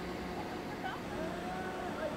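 A steady low machine hum with faint, distant voices over it.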